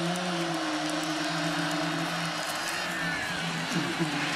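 Football stadium crowd noise, with a steady low droning note held for about three seconds that fades out near the end.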